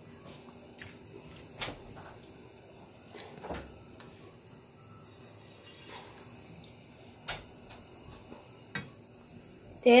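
A silicone spatula stirring a pan of chunky chicken stew, giving a few scattered light knocks and scrapes against the pan over a quiet kitchen background.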